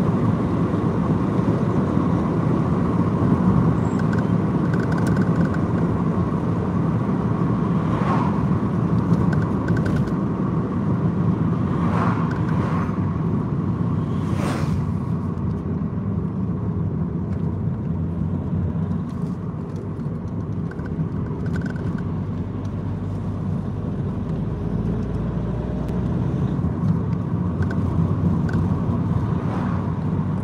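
Steady engine and tyre rumble heard from inside a moving car, with a few brief knocks along the way.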